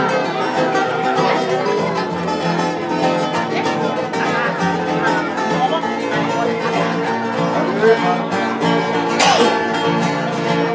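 Several acoustic guitars and a ukulele strumming chords together in a steady rhythm, with voices faintly mixed in. A sharp knock sounds about nine seconds in.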